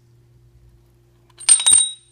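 A steel pistol sight, pushed by a brass punch in a vise, breaks loose in the H&K P2000 slide's dovetail: a quick run of sharp metallic clicks about one and a half seconds in, with a high bell-like ring that hangs on briefly.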